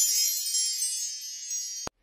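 Sparkly chime sound effect: a cluster of high, bell-like tones that rings on and slowly fades, then cuts off suddenly near the end.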